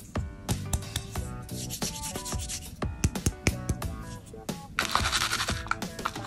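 Background music with steady notes, over rubbing and light clicking from hands handling a coiled candy tape roll and its plastic case. A louder burst of scraping comes near the end.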